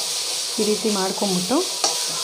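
Sliced onions, tomatoes and herbs sizzling in oil in an aluminium kadai, stirred with a metal slotted spoon that clicks against the pan. A few short pitched sounds come between half a second and a second and a half in.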